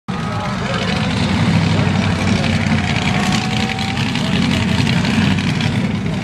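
Small-block Chevy 350 V8s swapped into S10 pickups, running steadily at low revs with a deep exhaust rumble.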